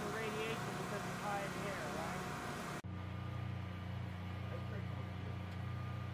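Faint, indistinct voices over a steady low machine hum. About three seconds in, the sound cuts abruptly to a different, steadier low hum with only faint voices.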